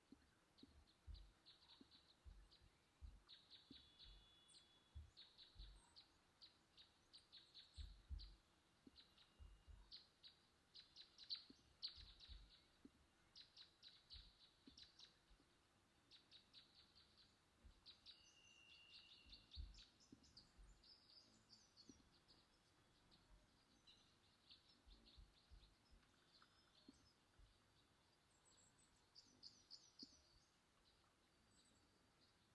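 Faint runs of quick clicks, typical of a computer mouse's scroll wheel and buttons, with a few soft low knocks, over near-silent room tone.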